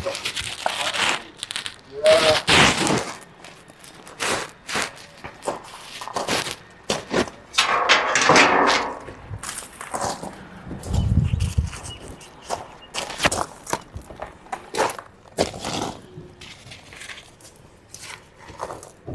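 Small scrap-wood fire crackling with irregular snaps and pops under a drum of boiling water, with a few longer scraping rustles and a brief low rumble a little past the middle.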